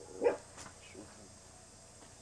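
A dog barking: one short bark just after the start, then a fainter bark about a second in.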